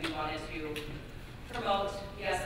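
Speech only: a person talking.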